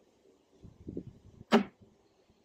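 Clear plastic oil-filled hive pest trap being handled with gloved hands: a few soft knocks and rustles, then one sharp plastic click about one and a half seconds in.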